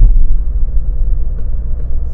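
Car cabin noise while driving: a loud, steady low rumble of engine and tyres on the road.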